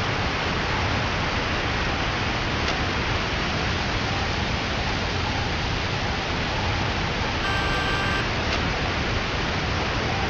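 A steady, even hiss at an unchanging level, with a short electronic beep of a few pitches held for under a second near the end.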